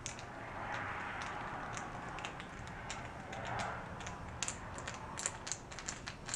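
Faint, irregular small metallic clicks and light scraping from a hand screwdriver with a JIS bit turning out the long bolt of a motorcycle bar-end weight, a bolt set with red Loctite that has just been broken loose.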